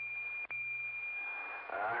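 A steady, high, single-pitch whistle from a two-way radio receiver after the other station stops transmitting. It is broken by a click and a brief dropout about half a second in, and it stops as a voice begins near the end.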